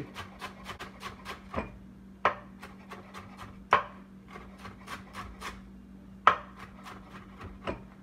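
Chef's knife chopping fresh coriander on a bamboo cutting board: quick, even strokes of several a second, with three louder knocks of the blade on the wood spread through.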